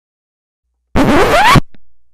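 A record-scratch sound effect: a loud, scratchy burst with a pitch sliding sharply upward. It starts about a second in, lasts about half a second, and cuts off abruptly.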